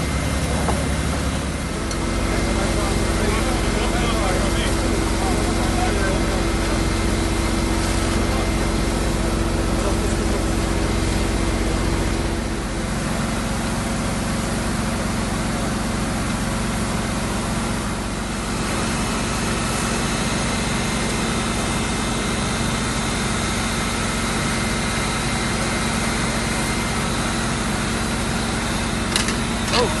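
Fire engines running at the scene, a steady low engine drone with a humming tone; the pitch shifts about 2 seconds in and again near 12 seconds. A short sharp noise comes near the end.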